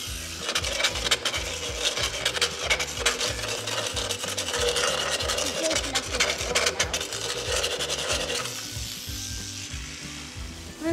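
Motorised equine dental float (power float) rasping a pony's teeth, a dense gritty grinding with a steady motor hum, starting about half a second in and stopping a little before the end.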